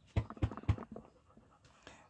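A chocolate Labrador close to the microphone, with three quick short sounds in the first second, then quieter.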